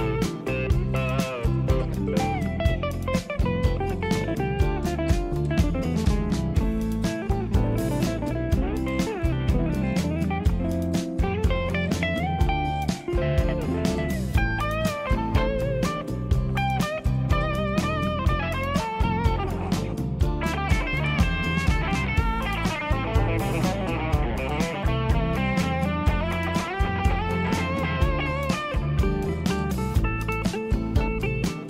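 PRS SE Silver Sky electric guitar playing lead lines with string bends over a backing track with a steady drum beat and bass.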